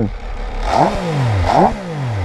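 MV Agusta 140 hp three-cylinder motorcycle engine revved with two quick throttle blips, the revs climbing sharply and falling back after each.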